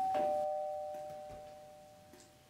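Two-note doorbell chime: a higher ding, then a lower dong about a quarter second later, both ringing on and slowly fading.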